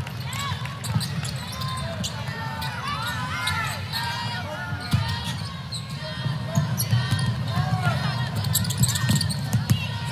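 Basketball game sounds on a hardwood court: the ball bouncing in scattered sharp thuds and sneakers squeaking in short high chirps. Underneath runs a steady hum of background voices in a large arena.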